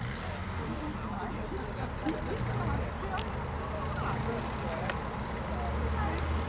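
Old saloon car's engine running at low speed as the car is manoeuvred slowly, a steady low hum, with people talking in the background.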